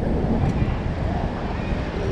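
Wind buffeting the microphone as a steady, fluctuating low noise, with city street traffic underneath.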